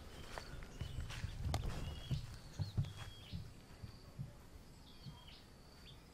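Faint orchard ambience: a bird repeating short, high whistled notes that hook upward at the end, several times over. Soft low thumps of footsteps run through the first half, and the sound fades out shortly before the end.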